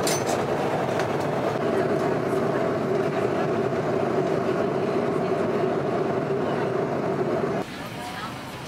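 Airliner cabin noise: the steady drone of the jet's engines and air, with two steady hum tones in it. It drops off sharply near the end. There is a brief click at the very start.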